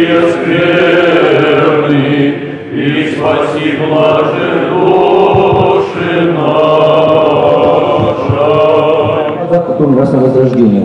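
A hall full of clergy and laypeople singing a hymn together, slow and chant-like, with long held notes.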